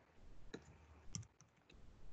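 About five faint keystrokes on a computer keyboard, typing a short word.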